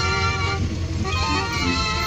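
Festival band music with long held, melodic notes over a steady low hum; the higher notes drop out briefly about half a second in, then resume.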